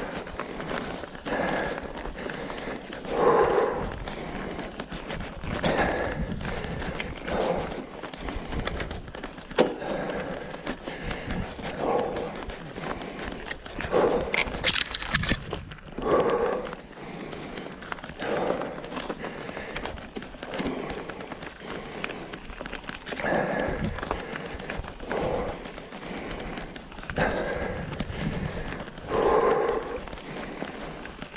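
Mountain bike ridden uphill on a dirt forest singletrack: tyres rolling over dirt and leaf litter, with the rider's heavy breathing swelling every second or two from the effort of the climb.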